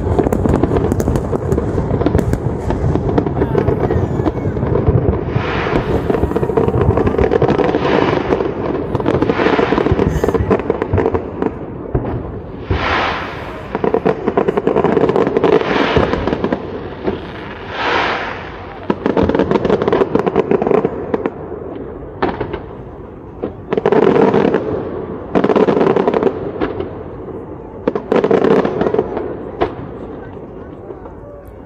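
Large fireworks display heard from across the harbour: dense, continuous crackling and popping of bursting shells, with louder swells every second or two. It thins out near the end.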